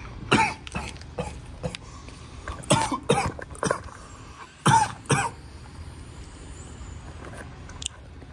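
A person coughing repeatedly in three short bouts of harsh coughs, the loudest about five seconds in.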